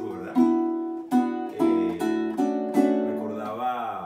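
Venezuelan cuatro strummed in a loose rhythm, about half a dozen chords that each ring on before the next. A man's voice comes in over the last ringing chord near the end.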